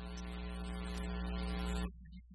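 Church organ holding a low sustained chord that swells steadily louder, then releases abruptly just before the end.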